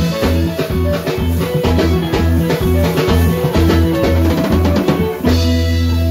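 A live band plays up-tempo dance music: drum kit, electric guitar and a pulsing bass. A bit over five seconds in, the beat stops and the band holds one chord.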